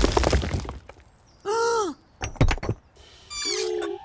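Cartoon sound effect of a brick wall crashing down, the clatter and rumble of falling bricks dying away within the first second. After a brief lull come a short rising-and-falling pitched sound, a few light knocks, and another short falling pitched sound near the end.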